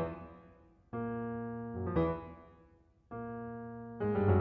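Solo piano accompaniment: a sustained chord struck about a second in and another just after three seconds, each left to ring and fade, with a brief louder run of notes near two seconds.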